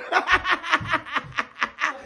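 A man laughing hard: a quick run of short laughs, about five a second, that stops just before the end.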